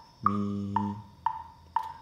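Metronome clicking steadily at two beats a second, with a brighter accented click on the first of every four beats. Over the first click a voice sings the solfège syllable "mi" once, held for most of a second.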